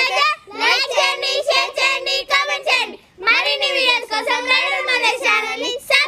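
A group of children singing together in unison: two sing-song phrases, each about two and a half seconds long, with a short break between them about halfway.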